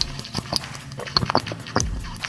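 Drinking sound effect: a run of irregular gulps and sips, with a few stronger gulps spaced through it.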